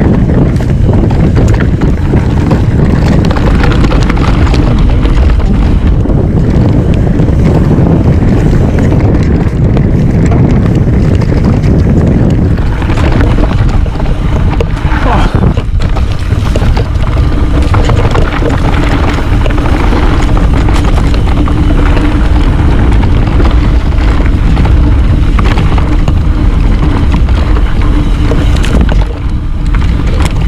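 Wind buffeting an action camera's microphone and the tyres of a Trek Remedy full-suspension mountain bike rumbling over a dirt singletrack on a fast descent, as a steady loud rush. A steady low hum joins from about halfway.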